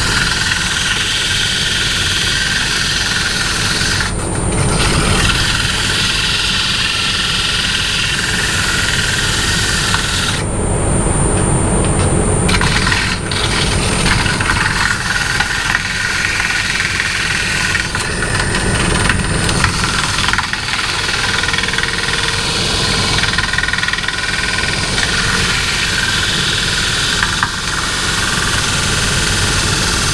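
Wood lathe running with a turning tool cutting the small spinning wooden blank: a steady cutting hiss over the lathe's drone and a constant high whine. The cutting noise drops away briefly about four seconds in and again for a couple of seconds around ten seconds in, when the tool comes off the wood.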